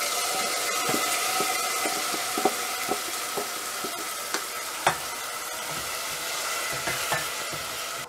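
Washed moong dal and rice hitting hot seasoning in a pressure cooker, sizzling steadily as a wooden spatula scrapes them out of a steel bowl and stirs them in. Scattered knocks of the spatula against the metal, the sharpest about five seconds in.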